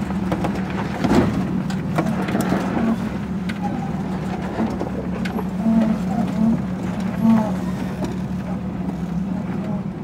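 Jeep engine running steadily at low revs while the Jeep crawls down a rutted dirt trail, heard from inside the open cab, with a few knocks and rattles from bumps in the first few seconds.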